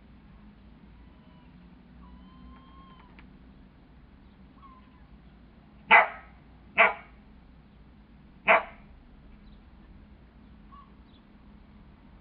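Border collie barking three short, sharp times during rough play with another dog: two barks close together, then a third about a second and a half later.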